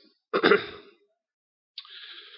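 A man clears his throat once, briefly. A softer hiss starts near the end.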